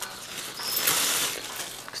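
Thin plastic carrier bag rustling and crinkling as it is untied from a metal post, loudest for about a second in the middle.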